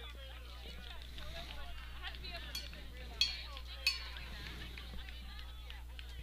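Faint, distant voices of players and spectators over a steady low hum, with two short sharp clicks about three and four seconds in.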